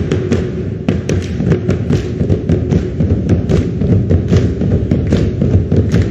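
Rope-laced skin drums struck with sticks in a fast, steady stream of beats, the drumming for a Tongan ma'ulu'ulu sitting dance.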